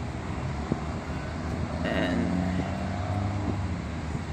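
Car engine running nearby, a steady low hum, with a brief higher-pitched sound about halfway through.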